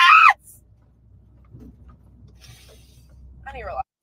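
A woman's voice finishes a sentence at the very start, then a few seconds of faint, steady low rumble of a car interior, with a short rising vocal sound from her near the end.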